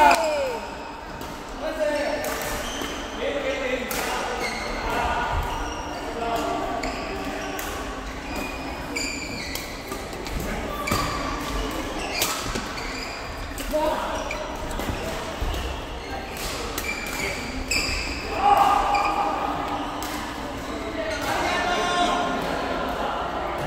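Badminton rackets hitting a shuttlecock in a rally: sharp, irregular smacks every second or so, echoing in a large sports hall, with voices from around the hall.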